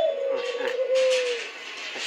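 A white dove cooing: one long, low call that dips at the start, then holds steady for about a second and a half before fading, with light rustling beside it.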